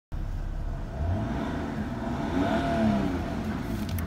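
Car engine idling in park and then revved, its pitch rising and falling again around the middle.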